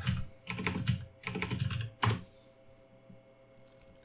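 Typing on a computer keyboard: keys clicking in quick runs for about two seconds, ending with one sharper keystroke.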